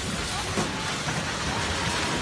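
A building collapsing in an earthquake: a steady rushing noise of falling masonry and debris, with no break.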